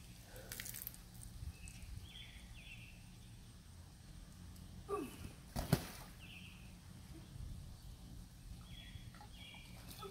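An inflatable pool float is tossed in and smacks onto the water once, a sharp short splash about six seconds in, over a steady low outdoor hum with a few short high chirps.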